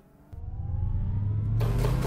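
Logo sting sound effect: a deep rumble with a slowly rising whine swells in after a moment of silence. A rush of hiss joins it about one and a half seconds in.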